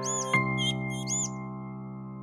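Closing chord of a children's song backing track, struck just after the start and ringing out as it slowly fades. High cartoon duckling peeps sound over it during the first second.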